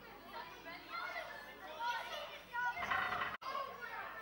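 Background chatter of distant voices, scattered and indistinct, with a short burst of noise about three seconds in followed by a momentary dropout in the sound.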